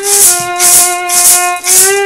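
Blues fiddle holding one long note between sung lines, bending slightly upward near the end, over a shaker keeping a steady beat.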